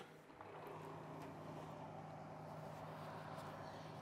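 Faint steady hum of an electric oven's fan running, heard through the open oven door as the cake mould goes in; it starts about half a second in.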